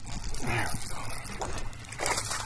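Water splashing as a hooked bass thrashes at the surface beside a kayak.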